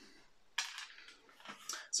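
Light clatter of small plastic parts and wires being handled: one sharper click about half a second in, then a couple of fainter knocks.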